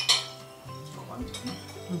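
A metal fork clinking and scraping on a ceramic plate, with one sharp clink just after the start and a softer one about a second later.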